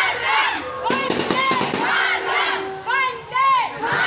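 A large group of marching schoolchildren shouting together in chorus, their loud calls rising and falling again and again.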